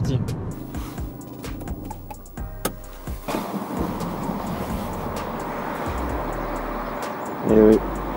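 Road and engine noise inside a moving Peugeot 206 RC, then after about three seconds a steady even hiss in a car-wash bay.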